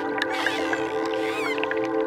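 Dolphin whistles, one wavering glide in pitch lasting about a second, with a few sharp clicks, over slow ambient music holding a steady chord.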